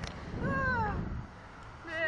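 A rider's high, falling squeal of delight, over a constant low wind rumble on the microphone. A second, shorter squeal starts near the end.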